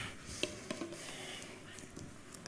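Quiet lecture-hall room tone with a few faint clicks and knocks, the clearest about half a second in.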